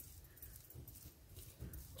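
Faint soft rubbing with a few light ticks: a bare hand smoothing wet cement slurry over a rag-wrapped wire form, over a low steady background hum.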